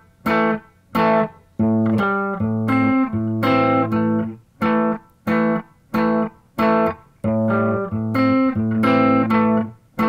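Clean-toned electric guitar played fingerstyle: the staccato boogie riff in A, with the thumb on the open A string against fifth-fret notes on the D and G strings, a slight bend and double-stops. Short clipped hits with brief silences alternate with runs of joined-up notes, and the figure comes round about twice.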